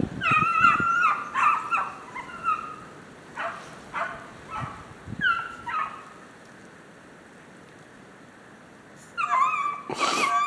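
A pack of 13-inch beagle bitches giving tongue on a rabbit's line: several high, yelping hound voices overlap for the first few seconds, thin out to scattered single cries, fall silent for about three seconds, then the pack opens up again shortly before the end.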